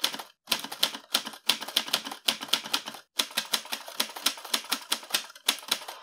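Typewriter keys clacking in a rapid, uneven run of keystrokes, with two short breaks, one near the start and one about halfway.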